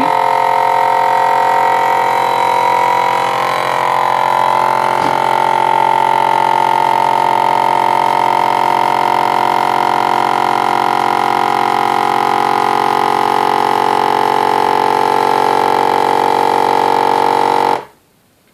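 FoodSaver V2490 vacuum sealer's pump running steadily, pulling the air out of a mason jar through the hose and jar-sealer lid. Its pitch drops slightly a few seconds in. It cuts off suddenly near the end as the cycle finishes.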